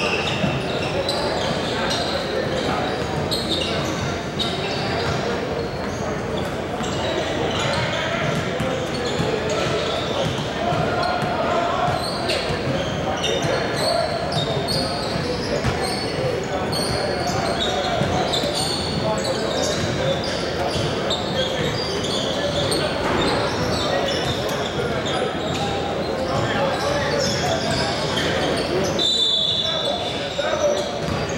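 Gym hubbub: many voices talking at once, echoing in a large hall, with basketballs bouncing on the hardwood court throughout. A short high-pitched tone sounds about a second before the end.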